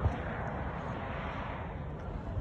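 Wind buffeting a phone microphone outdoors: a steady, choppy low rumble with a brief thump at the start.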